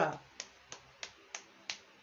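Five sharp finger snaps at a steady beat, about three a second, right after a voice trails off.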